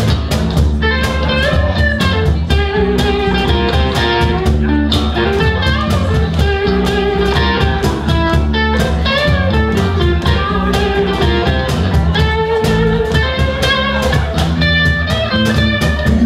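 Live rock band playing an instrumental passage with no vocals: an electric guitar line over bass guitar and a steady drum beat.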